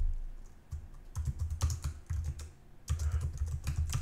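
Typing on a computer keyboard: quick runs of keystrokes with a short pause about halfway through.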